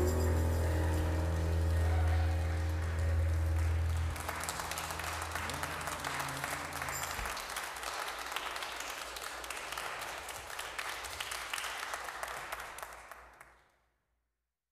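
A held instrumental chord ends about four seconds in, followed by congregation applause that fades out near the end.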